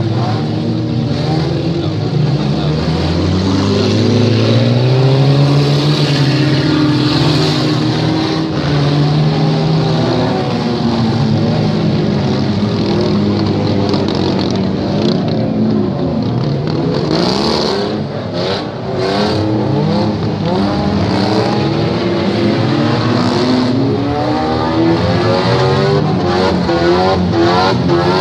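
Several demolition-derby car engines revving and running at once, their pitches rising and falling as the cars accelerate and back off. A few short sharp noises come about two-thirds of the way through.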